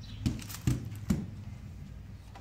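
Cardboard-wrapped fireworks packs being handled and set down on a table: three dull knocks in quick succession in the first second or so, with faint rustling.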